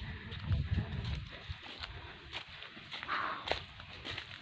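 Footsteps through grass and leaf litter, with low thuds in the first second or so and a brief rustle about three seconds in.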